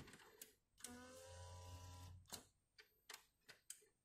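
Epson WorkForce Pro WF-C5210 inkjet printer starting up after a restart, heard faintly: a click, a motor whirring steadily for about a second and a half, then a few sharp clicks as its mechanism initialises.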